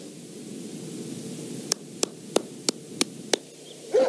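Steady hiss of background noise on the soundtrack, with a quick run of sharp clicks, about three a second, in the middle.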